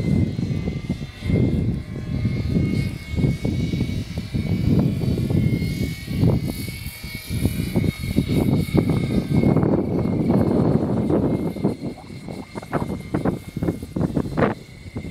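Rotors of a scale radio-controlled CV-22 Osprey tiltrotor model in flight, heard as a steady high whine whose pitch rises slightly midway and then eases back. Gusty wind on the microphone makes an irregular low rumble, the loudest sound.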